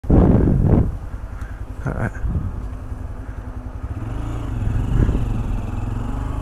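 Honda Grom's small single-cylinder engine running steadily at low speed as the motorcycle rolls along.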